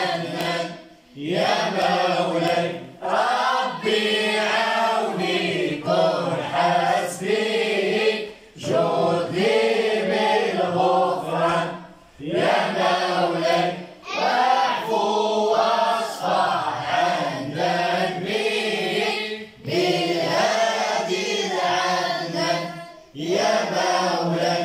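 A group of boys singing madih, Moroccan devotional praise song for the Prophet, together with a man's voice among them. The singing comes in phrases a few seconds long, with short breaks for breath between them.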